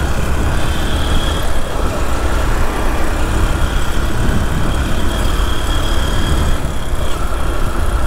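Honda NXR Bros 160 single-cylinder motorcycle engine running steadily while riding through town, with wind rumbling over the helmet-mounted microphone.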